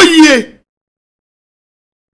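A man's voice that stops about half a second in, followed by dead silence: the sound track drops out completely.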